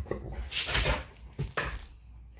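A dog giving two short, rough, breathy vocal bursts, the longer one about half a second in and a brief one near the end.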